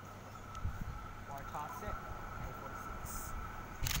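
Sydney Trains Waratah electric train approaching: a faint steady whine over a low rumble, with faint distant voices about halfway through.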